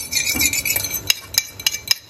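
Beaten egg and chopped green garlic frying in hot olive oil in a frying pan, sizzling with many sharp, irregular crackles and pops.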